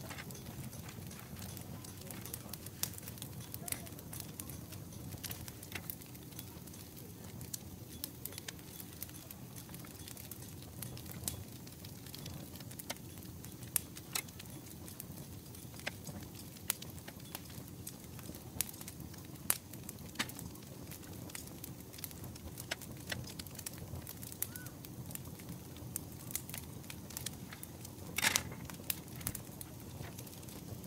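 Food-prep handling sounds: a paper towel rustling against raw lamb and a knife cutting between lamb ribs on a wooden board, with scattered small clicks over a low steady rumble. A louder knock comes near the end as the knife is set down.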